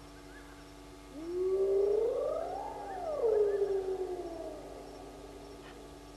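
A wild animal's long howl, about three and a half seconds long. It rises steadily in pitch, then slides back down and fades.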